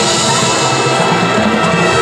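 High school marching band playing a field show: sustained brass chords over drum and pit percussion.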